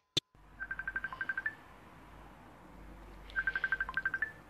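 Electronic beeping: two short trills of rapid beeps at one high pitch, about a dozen a second, each lasting about a second and coming roughly two seconds apart, with a brief click just before the first.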